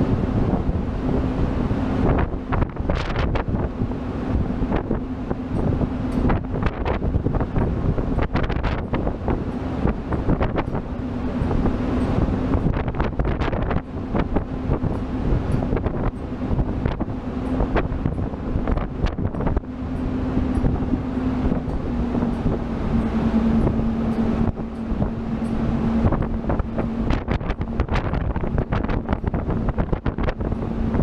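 Strong wind buffeting the microphone over the steady hum of a tugboat's engines running. The hum steps slightly lower in pitch about two-thirds of the way through.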